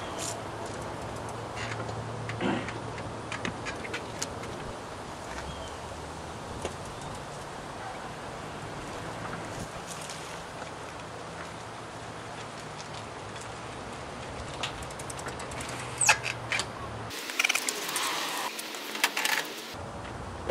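A small recumbent tricycle being ridden on concrete, giving scattered light clicks and rattles over a low steady background hum. Near the end there is a denser run of louder clatters and scrapes as the rider climbs off the trike.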